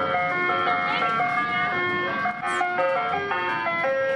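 Ice cream truck jingle: a melody of short, steady notes stepping up and down in pitch, played through the truck's loudspeaker.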